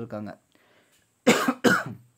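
A person coughs twice in quick succession, the two coughs under half a second apart in the second half.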